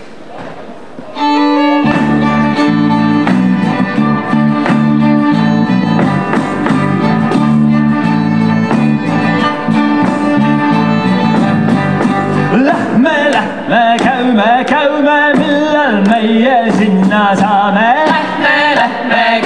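A folk band starts a herding song in regilaul style about a second in: fiddle playing the tune over electric guitar and bass guitar. About thirteen seconds in, singing voices join.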